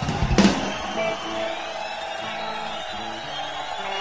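Live rock band playing: a drum and cymbal hit about half a second in, then a quieter passage of held guitar notes.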